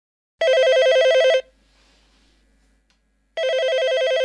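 Telephone ringing twice, each ring a warbling trill that flips rapidly between two pitches and lasts about a second, with about two seconds between rings.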